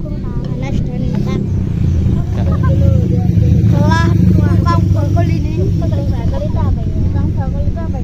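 High children's voices chattering and exclaiming over a steady low rumble.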